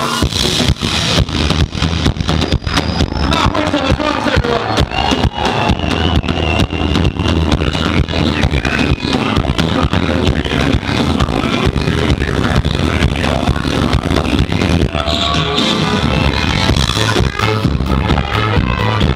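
Live band playing an up-tempo swing tune: a steady drum beat and heavy bass, with flute and trumpet melody lines over them.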